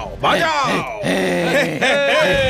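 A man's loud, drawn-out vocal cry, its pitch sliding down and wavering, then held more steadily.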